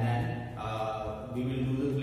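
A man's speaking voice, his words running on without a break.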